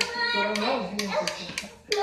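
A person's voice talking, the words not made out, with a few light clicks or taps.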